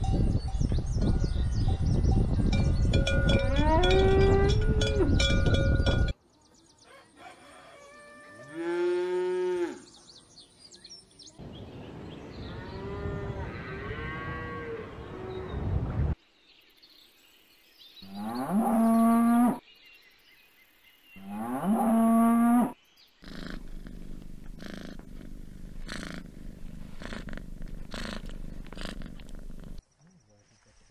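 Cattle mooing: about five separate moos, each rising in pitch and then holding, over changing outdoor backgrounds. A few short knocks follow near the end.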